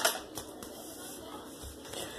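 Handling noise from a phone held close to its microphone: a sharp click or tap at the very start and a lighter one a moment later, then faint rustling.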